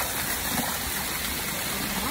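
Water from a small waterfall spilling down a rock face close to the microphone, a steady rushing splash.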